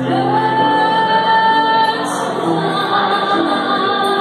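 Live music: a woman singing into a microphone over instrumental accompaniment, holding one long note that slides up into it at the start and lasts nearly two seconds, then moving on to shorter notes.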